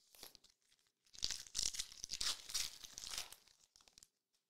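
Trading cards being handled, with rustling and crinkling of card stock and packaging: a dense stretch of papery noise starting about a second in and lasting about two and a half seconds.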